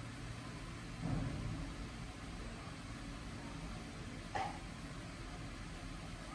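Quiet room tone: a steady low hum, with a soft thump about a second in and a short click a little after four seconds.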